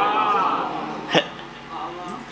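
A man's voice through a public-address microphone, softer than his recitation, drawing out a sound with wavering pitch. About a second in comes a short, sharp catch of breath, and a faint brief murmur follows near the end.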